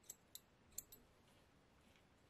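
Small spring-loaded thread snips handled and squeezed, giving a few faint metallic clicks in the first second, then near silence.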